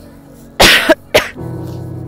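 A person coughs twice, two loud sharp coughs about half a second apart, the first longer, over background music with sustained tones.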